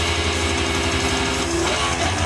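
Distorted electric guitar music with sustained notes over a steady low bass, in a heavy metal style.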